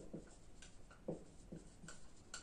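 Faint, short scratching strokes of handwriting, a few scattered through the two seconds.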